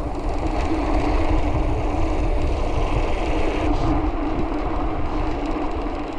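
Mountain bike rolling over interlocking brick paving: a steady rumble of the tyres on the bricks, with wind noise on the handlebar-mounted microphone.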